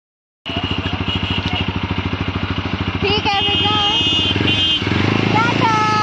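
A motor scooter's small single-cylinder engine running close by, its firing heard as an even rapid pulse. About five seconds in, its low note steadies and gets stronger as the scooter gets going.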